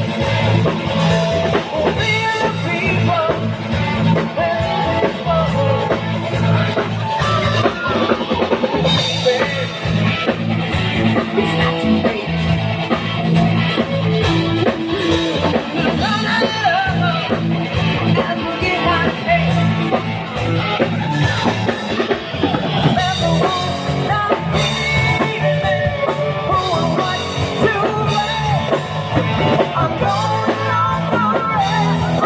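Live rock band playing a song through PA speakers: electric guitars, bass and drum kit with a singer, loud and steady.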